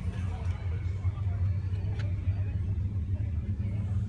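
A steady low rumble with faint voices in the background, and a single light click about two seconds in.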